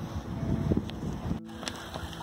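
Wind buffeting the phone's microphone, a low rumble that breaks off abruptly about one and a half seconds in, leaving a quieter steady outdoor background.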